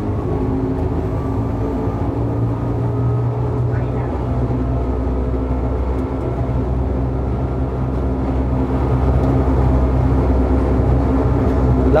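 Electric rack railcar Beh 2/4 n°72 climbing in rack mode at about 24 km/h, heard from inside the driver's cab: a steady running hum with several steady whining tones, growing a little louder in the last few seconds.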